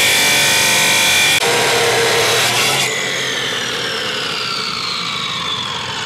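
DeWalt abrasive chop saw cutting through steel tube, with a loud grinding screech that ends about three seconds in. The motor then winds down with a slowly falling whine.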